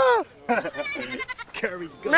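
Young goat bleating in a wavering cry, with people's voices around it.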